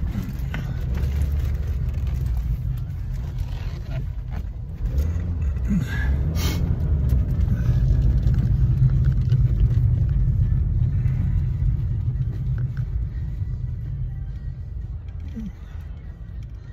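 Steady low rumble of a car's engine and tyres heard from inside the cabin while driving, swelling for a few seconds in the middle. A short sharp click about six and a half seconds in.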